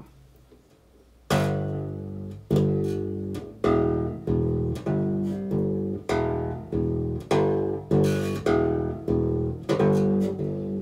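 Electric bass played fingerstyle: single notes plucked by the right-hand fingers, the first about a second in, then about two a second, each ringing into the next as the pitch moves between a few notes.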